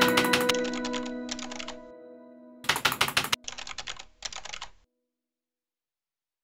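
Computer keyboard typing sound effect: several quick runs of keystrokes, the loudest run about two and a half seconds in, all stopping about a second before the end. The last notes of background music fade out under the typing over the first two seconds.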